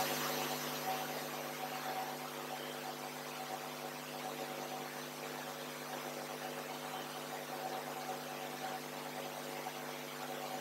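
Steady electrical hum with a faint whir and hiss, unchanging throughout: the room's equipment noise while no one speaks.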